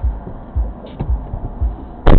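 Low dull thumps, about two or three a second, with a single sharp click about a second in, inside a waiting car as passengers climb in and settle into their seats.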